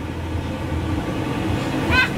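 Electric blower of an inflatable bounce house running with a steady low rumble.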